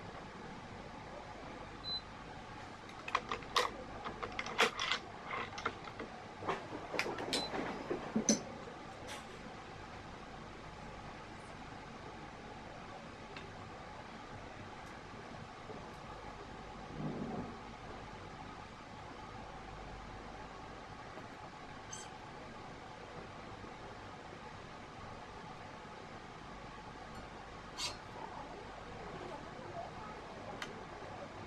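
Small clicks and snaps of badminton string and a stringing machine being handled as a racket is strung: a quick cluster of them a few seconds in, a short low rumble near the middle, and a couple of single ticks later, over a steady room hum.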